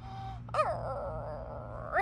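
A high, squealing creature cry for a toy baby raptor: a short chirp about half a second in, then a drawn-out whining squeal that dips in pitch and rises sharply at the end.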